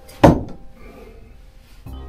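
A thrown no-spin knife strikes the target with one sharp, loud thunk about a quarter second in, followed by a brief ring.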